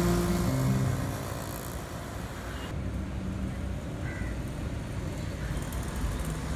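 Urban road traffic with motor scooters passing close by, a steady low rumble of engines and tyres. Background music fades out in the first second or so.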